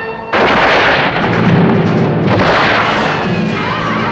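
Two loud blasts, the first about a third of a second in and the second about two seconds later, each dying away over a couple of seconds, as from cannon fire in a battle scene.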